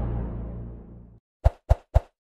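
The low, sustained closing note of the trailer score fades and cuts off about a second in. Three quick pop sound effects follow, about a quarter second apart, as the like, subscribe and notify buttons pop up.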